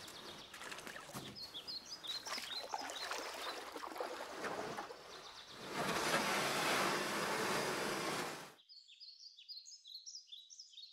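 Birds chirping over a steady background noise. A louder, even rushing noise comes in about six seconds in and cuts off abruptly near the end, leaving only thin high chirps.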